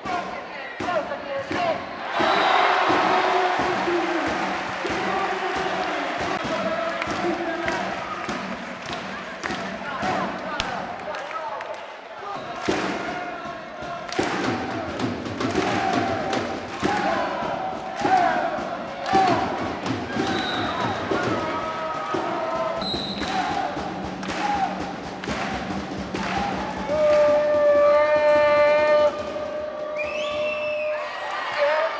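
Indoor volleyball rallies: the ball is struck hard again and again in serves, spikes and digs, over crowd noise with cheering and chanting voices. A held, horn-like tone sounds near the end.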